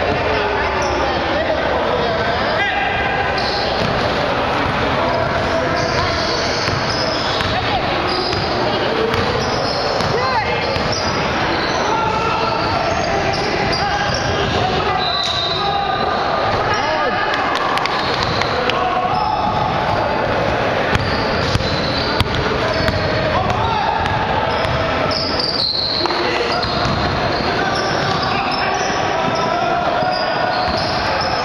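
Basketball game in play on a hardwood gym floor: the ball repeatedly bouncing and dribbled, mixed with players' shouts and calls, and several sharper impacts about three-quarters of the way through.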